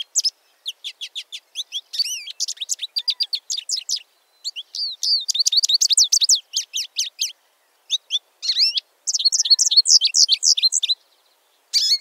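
American goldfinch singing: long runs of rapid, high twittering and warbling notes, in phrases broken by short pauses.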